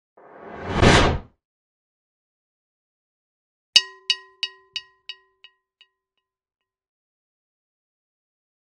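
Animation sound effects: a whoosh that swells for about a second and cuts off, then, about four seconds in, a bell-like ding repeated in about seven fading echoes, roughly three a second.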